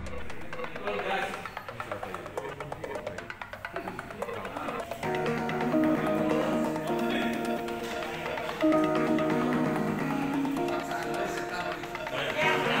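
Background music over indistinct talk. The music comes in about five seconds in with steady held notes.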